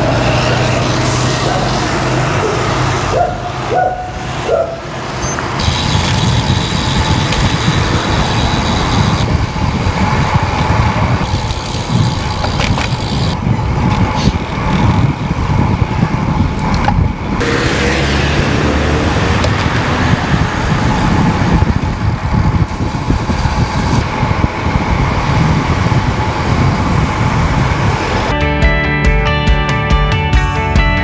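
Steady road and traffic noise from a moving road bike on city streets, with motor vehicles passing close by. Guitar music comes in about two seconds before the end.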